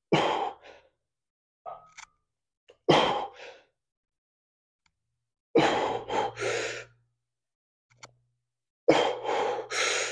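A man's forceful, breathy exhalations on each pull of heavy bent-over rows with 100 lb dumbbells, four efforts about three seconds apart. The later ones break into two or three puffs as the set gets harder.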